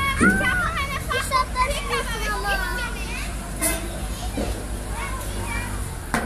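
Young children's high-pitched voices chattering and squealing, busiest in the first half and sparser after, over a steady low rumble.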